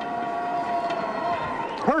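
A steady held tone, siren-like, over background noise, ending about a second and a half in. A man's voice then begins a personal-foul announcement over the stadium public-address system, echoing.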